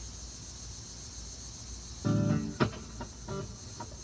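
Electric guitar through a small amplifier: one strummed chord about two seconds in, then a few single picked notes, over a steady high insect-like buzz.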